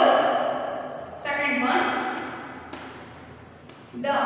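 A woman's voice speaking a few short words, then two light taps of chalk on a blackboard in the second half.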